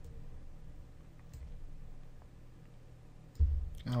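A few faint computer mouse clicks over a low steady hum, with a short low thump near the end.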